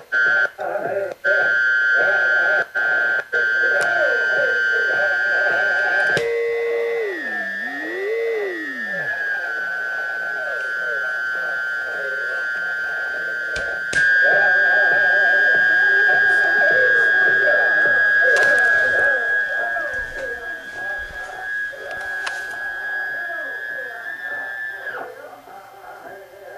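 A Realistic DX-440 radio plays an AM station's chanting music through its speaker, with a steady high heterodyne whistle over it from a signal generator's carrier tuned close to the station. A few seconds in, the whistle swoops down and up in pitch as the generator is tuned. It then holds steady and cuts off shortly before the end.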